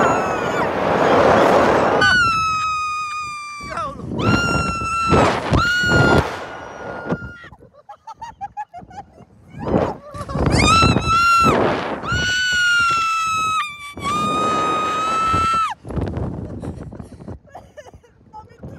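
Riders on a Slingshot reverse-bungee ride screaming as they are catapulted into the air: a rush of noise at the launch, then about five long, high, held screams. The screams fade toward the end.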